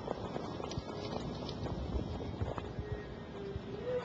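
Hoofbeats of harness-racing horses pulling sulkies on the dirt track, an irregular run of knocks over steady track noise.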